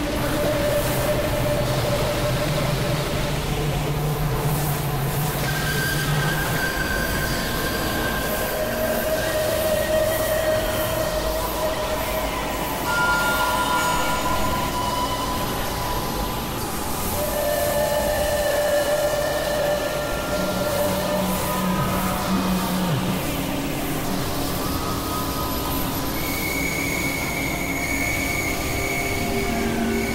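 Dense layered experimental electronic music: several held drone tones at different pitches come and go every few seconds over a steady noisy wash, with a few sliding pitches.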